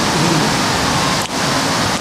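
A loud, even rushing hiss, with a brief break about a second and a quarter in.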